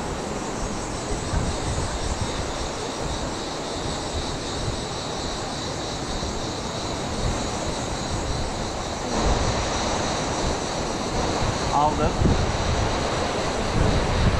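Steady rush of the flowing stream, with low wind rumble on the microphone that grows stronger about nine seconds in.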